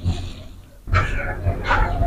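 A man snoring: a short snore at the start, then a longer one about a second in, over a steady low rumble.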